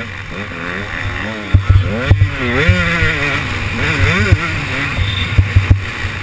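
KTM 125 two-stroke motocross bike engine revving up and down as it is ridden, heard close up from a camera mounted on the bike. A few sharp knocks come through along with it.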